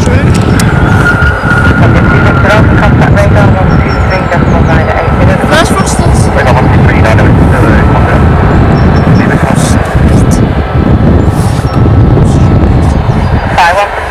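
Jet airliner's engines rumbling loudly during the landing rollout, with a thin steady whine running over the low rumble.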